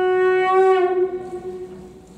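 A conch shell (shankha) blown in one long steady note that dips slightly in pitch and fades out about a second in.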